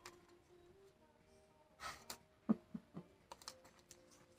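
A deck of tarot cards being shuffled by hand, faint: a soft swish of cards about two seconds in, then a quick run of light card clicks and taps.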